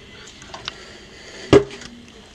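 Quiet sips from a paper cup of coffee, with a few faint small clicks, then one sharp knock about one and a half seconds in.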